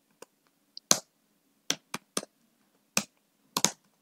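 Keystrokes on a computer keyboard: a slow, irregular run of single key clicks, about eight or nine in four seconds, as a line of code is typed.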